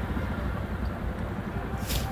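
Jawa Perak's single-cylinder engine idling, a low steady rumble, with a short hiss near the end.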